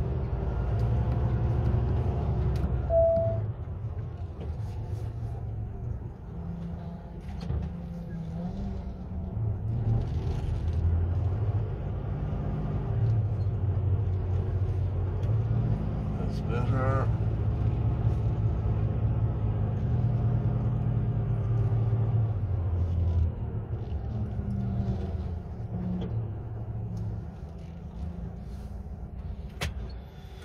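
Lorry's diesel engine running under the cab as the truck manoeuvres slowly, its note rising and falling with the throttle. A short rising whine sounds about halfway through.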